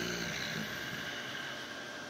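A man's short, low closed-mouth "hmm" dies away at the very start, followed by a faint exhale. Under it are steady room hiss and a thin, constant high-pitched electrical whine.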